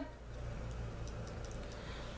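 Quiet room background with a steady low hum and a few faint light ticks.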